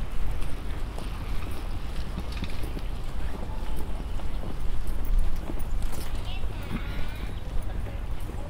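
Outdoor park ambience heard while walking: a low wind rumble on the microphone under distant, indistinct voices, with a short high-pitched call about six to seven seconds in.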